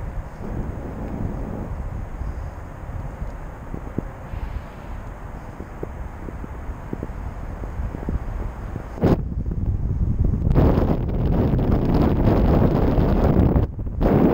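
Wind from the paraglider's airspeed rushing and buffeting over a GoPro Session's microphone in flight. It is a low rumble that gets louder and gustier over the last few seconds and breaks off suddenly twice for a moment.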